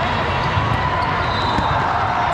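Echoing din of a large multi-court volleyball hall: volleyballs bouncing and being struck on many courts, over a steady murmur of voices.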